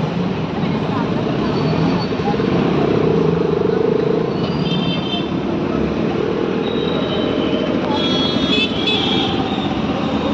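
Steady roadside traffic noise from passing motor vehicles, with indistinct voices nearby and a few short high-pitched tones near the middle and end.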